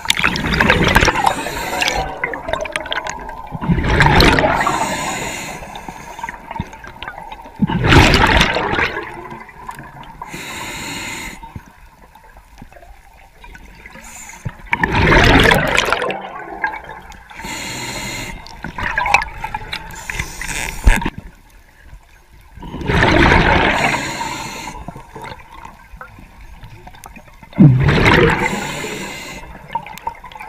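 Diver breathing underwater: rushes of exhaled air bubbles every few seconds, with fainter hisses between them.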